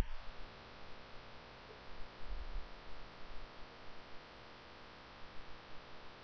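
Faint electrical hum with a light hiss: the microphone's background noise while no one speaks.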